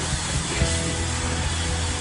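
Loud live rock music: a dense, noisy wash of distorted electric guitar and band sound, with a couple of held tones coming in about half a second in.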